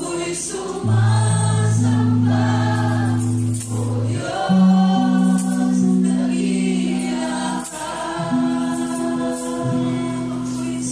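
Live Tagalog worship song: a woman sings the lead through a microphone with a church band. Low held notes change pitch every couple of seconds underneath her voice.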